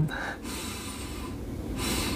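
A man sniffing in through his nose to catch a smell: one long draw of air, then another short sniff near the end.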